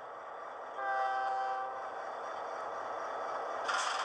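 Model diesel locomotive horn sound played from the Bachmann EZ App through an iPod touch's speaker, one short blast of about a second, over a steady engine sound from the app. A short hiss sounds near the end.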